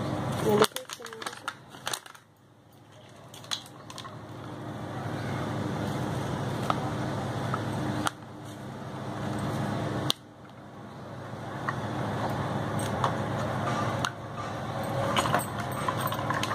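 Paper packet crinkling and rustling in the first couple of seconds as sodium benzoate powder is tipped from it into a steel bowl of tomato puree, with a few more light clicks later, over a steady background noise.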